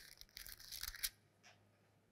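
Faint rustle of paper Bible pages being handled, a cluster of soft crinkles in the first second.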